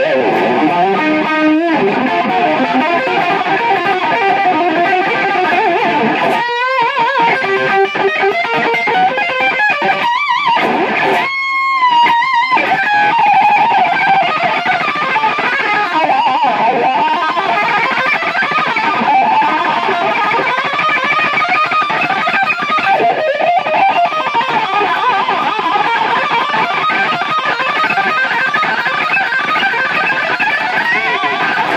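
Electric guitar played solo lead: fast runs of notes, with a few held notes with vibrato about eleven to twelve seconds in.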